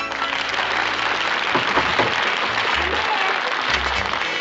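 Audience applauding steadily after a musical number, with a few low band notes underneath.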